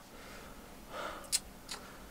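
A man in pain lets out a short, faint breathy gasp about a second in, followed by a couple of faint clicks.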